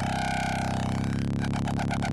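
Kilohearts Phase Plant FM bass patch playing through its nonlinear filter in Biased mode. It holds one steady note thick with overtones, with a fast, fine ripple running through it.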